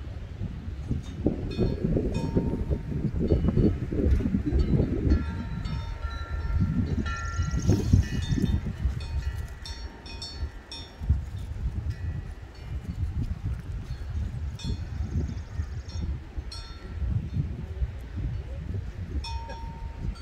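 Wind buffeting the microphone as uneven low rumbling gusts, with faint high metallic chime-like ringing every second or so.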